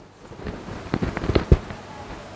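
Pen clicking and tapping on an interactive display's screen during handwriting: about five short, sharp clicks around the middle.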